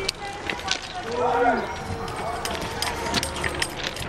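Voices calling out in short, unclear phrases over a steady outdoor background, with a few sharp clicks.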